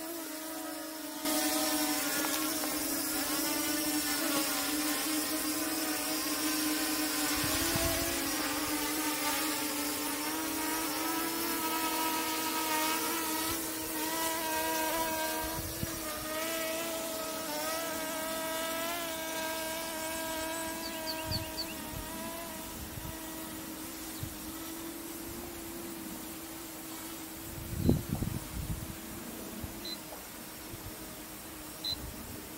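Dragonfly KK13 GPS drone's brushless motors and propellers buzzing steadily in flight, the pitch of the whine wavering slightly as the motors adjust. A brief knock comes near the end.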